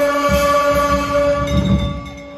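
Banjo-party band music: a loud chord held steady on the melody instrument while a fast, uneven drum roll rumbles underneath, dropping away near the end.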